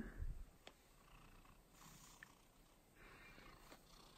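Faint purring of a tabby cat being stroked, coming in soft stretches, with a couple of light clicks.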